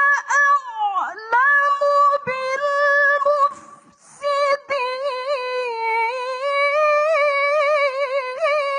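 A woman's voice reciting the Quran in the melodic mujawwad style: long, ornamented notes held in a high register, with a short pause for breath a little past halfway.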